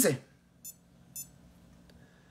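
Two short, high-pitched electronic beeps about half a second apart, just after a man's voice trails off.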